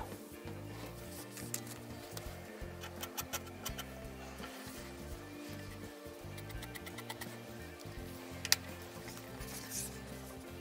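Quiet background music throughout, with faint clicks and taps from hands handling fabric strips and a zipper on a table; one sharper tap comes about eight and a half seconds in.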